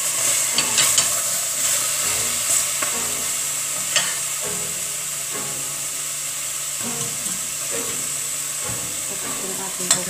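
Chopped vegetables sizzling in a stainless steel pot while a wooden spatula stirs them, with a few sharp knocks of the spatula against the pot in the first four seconds. Near the end there is another sharp knock as a glass bowl of vegetables is tipped against the pot.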